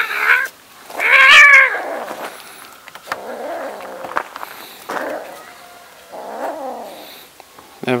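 A cat yowling during a play-fight with a puppy: one loud, drawn-out cry about a second in, then a few fainter cries.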